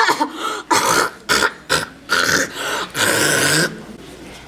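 A woman retching and coughing hoarsely into a plastic bag: a run of about nine short, harsh, rasping bursts, the last and longest starting about three seconds in.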